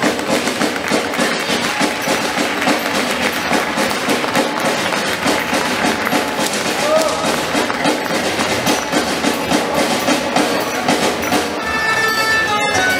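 Live traditional Castilian folk dance music from a band of guitars and other plucked strings, with a busy clatter of percussion and voices mixed in.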